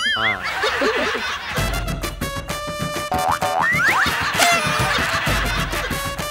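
Comic background music with a beat that comes in about a second and a half in, overlaid with cartoon-style sound effects: a springy boing at the start and quick rising whistle glides near the middle.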